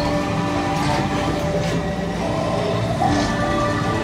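Ambient soundtrack of a dark boat ride: several long, held droning tones at different pitches over a steady rushing noise.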